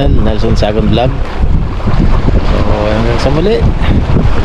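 Wind buffeting the camera microphone in a steady low rumble, with a man's voice over it during the first second and again near the end.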